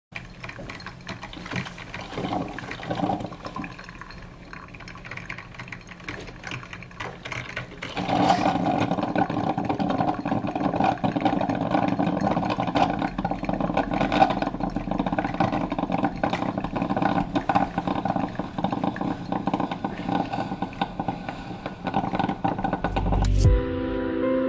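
Capresso drip coffee maker brewing: a steady hiss with many small pops and clicks, louder from about eight seconds in. Soft piano music comes in near the end.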